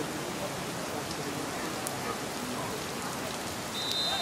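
Heavy rain falling steadily on a waterlogged football pitch, an even hiss. Near the end a short high whistle sounds, the referee's whistle.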